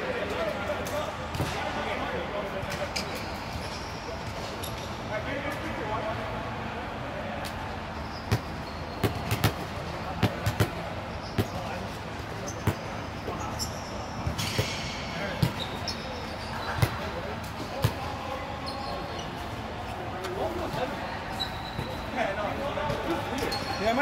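Balls bouncing and being struck on the hard court, scattered irregular impacts that are busiest through the middle of the stretch, over background chatter of players.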